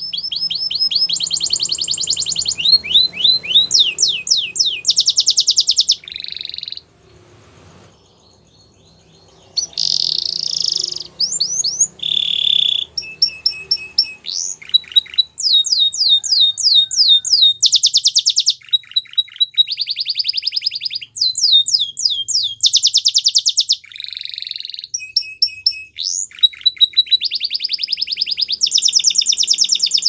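Canary singing a long, high-pitched song made of phrase after phrase of rapid trills: fast runs of repeated notes and quick downward-sweeping notes. The song breaks off briefly about seven seconds in, then carries on.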